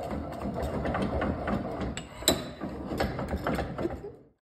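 Metal parts ticking and rattling by hand as a small part is unscrewed at a cast-iron bench vise, with one sharp metallic click a little past halfway.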